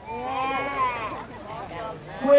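A man's voice over the PA making one drawn-out, wavering vocal sound without words, about a second long, rising then falling in pitch.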